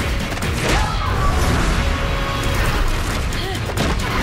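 Fight-scene soundtrack: a loud music score with sharp hits and impacts over it, and short grunts of effort from the fighters.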